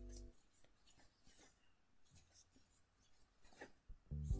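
Near silence with faint, scattered scratching and rubbing of a crochet hook working acrylic yarn by hand.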